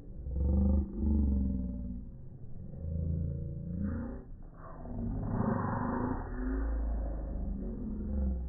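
Voices slowed down by slow-motion playback, turned deep and drawn out into growl-like sounds, with a stretch of hissing noise about five seconds in.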